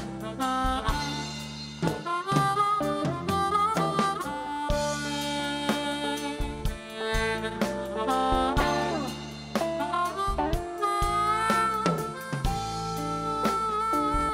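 Amplified blues harmonica solo, the harp cupped against a handheld microphone, with bent notes sliding down and a long held high note near the end. A band with drums and low bass notes accompanies it.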